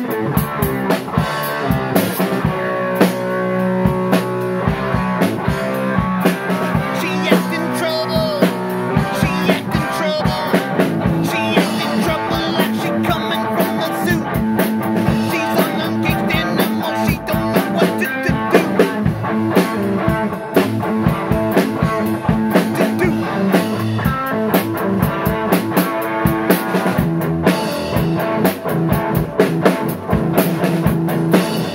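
Rock music played on a drum kit close by, with frequent drum and cymbal hits and a guitar playing along.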